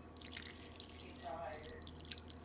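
Broth poured from a paper cup into a bowl of pho noodles: a light, steady trickle and splash of liquid.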